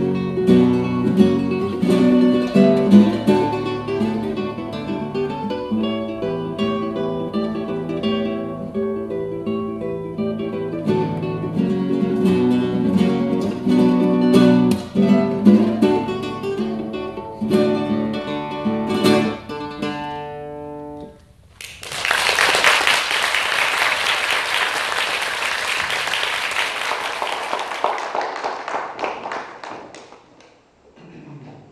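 Solo classical guitar played fingerstyle, the piece ending on a last ringing chord about twenty seconds in. Audience applause follows and fades out just before the end.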